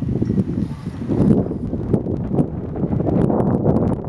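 Wind buffeting the microphone: a loud, uneven low rumble.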